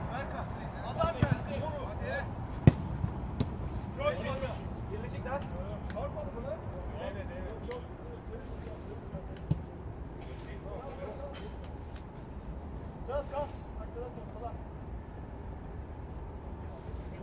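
Football players calling out to each other during play, with several sharp thuds of the ball being kicked; the loudest kick comes a little under three seconds in.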